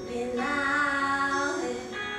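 Female voice singing one long, slightly wavering held note in a song, with soft accompaniment beneath.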